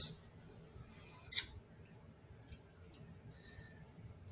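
Near-silent room tone, broken once about a second and a half in by a short, sharp hiss, with a couple of faint ticks after it.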